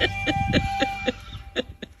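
A woman laughing in a quick run of short bursts that fade away, over soft background music.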